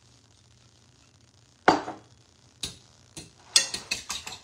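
A metal utensil knocking and clicking against a pan of beaten raw eggs. One sharp knock comes about a second and a half in, then a couple of single clicks, then a quick run of clicks near the end as the eggs are beaten.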